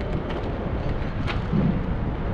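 Steady low rumble of wind buffeting a GoPro action camera's microphone, mixed with road noise, while riding a bicycle along a city street.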